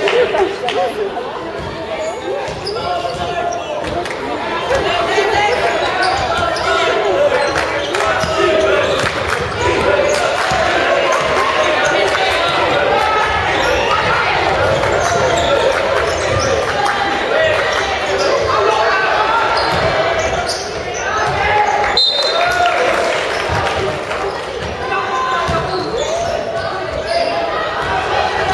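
Basketball game on a wooden gym floor: the ball bouncing and players' shoes knocking on the court, with many voices calling and shouting, echoing in the large hall.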